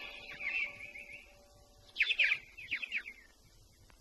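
Birds chirping in two bursts of quick falling chirps, the louder burst about two seconds in.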